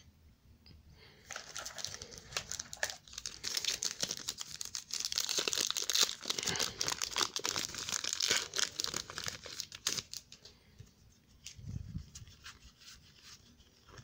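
Foil wrapper of a Panini trading card pack crinkling and tearing as it is ripped open by hand. A dense run of crackles starts about a second in and dies away after about ten seconds.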